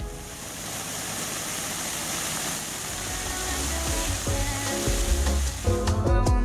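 A fountain's many water jets splashing onto paving make a steady hiss of falling water. Background music fades back in over the second half.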